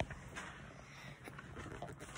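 Faint handling noise of a handheld phone: soft rustles and a few light taps over low room tone.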